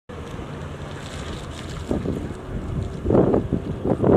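Outdoor street ambience dominated by wind buffeting the microphone, over a low rumble of vehicles. It swells louder about two seconds in, again around three seconds in and at the end.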